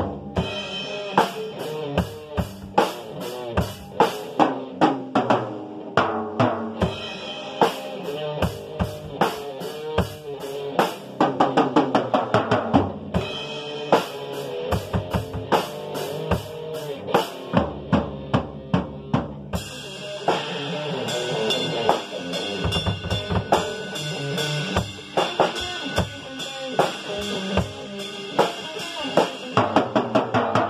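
Acoustic drum kit played in a steady groove: kick drum, snare and cymbals, with sharp strokes about four a second. Around twenty seconds in, the cymbals open into a denser, brighter wash.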